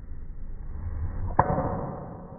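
A golf driver striking a ball off the tee: a single sharp crack about one and a half seconds in, with a short ring after it.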